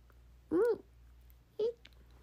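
A young woman's short wordless vocal sounds: one high-pitched sound that rises and falls about half a second in, and a shorter one a second later.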